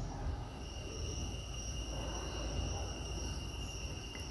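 Quiet background: a low hum and hiss with faint, steady high-pitched tones.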